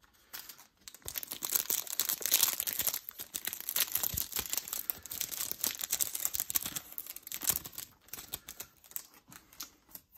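Foil Yu-Gi-Oh! booster pack wrapper crinkling and tearing open in someone's hands: a dense crackling that runs for several seconds and dies down near the end.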